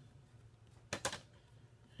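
Two quick clacks about a second in as hard plastic PSA graded-card slabs are handled and knock together; otherwise only quiet room tone.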